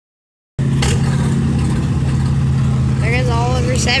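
Oliver Super 77 tractor's six-cylinder engine running steadily at a constant speed, starting about half a second in, with a man's voice over it near the end.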